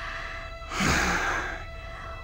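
A woman's long breathy sigh about a second in, over soft background music holding steady tones.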